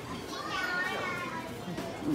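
A child's high-pitched voice calling out, falling in pitch, over the general murmur of a busy indoor public corridor.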